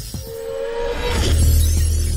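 Intro logo sting: electronic sound design with a short steady tone, then about a second in a glassy, shattering shimmer over a deep low rumble that holds.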